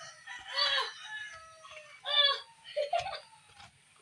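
Chickens clucking and calling, about four short separate calls.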